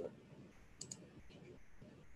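Faint clicking at a computer: a quick pair of clicks about a second in and another shortly after, over quiet room tone.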